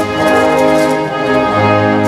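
Operetta orchestral accompaniment playing held chords, changing chord about a second and a half in.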